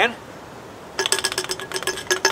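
A nail rattling inside a pop can as the can is shaken: a rapid run of metallic clinks, starting about a second in.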